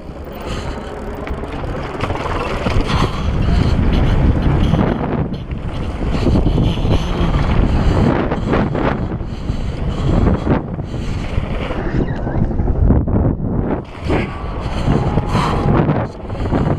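Wind rushing and buffeting over a rider-mounted camera's microphone as a downhill mountain bike runs at speed down a steep dirt ridge, with the bike's rattling and the tyres' knocks over rough ground mixed in.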